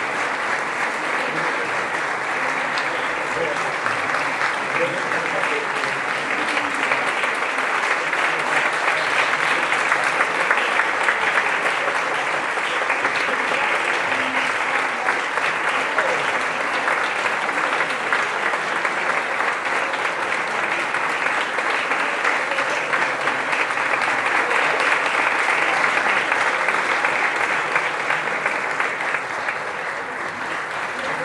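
Audience applauding steadily after a concert band performance, swelling a little about a third of the way in and again near the end.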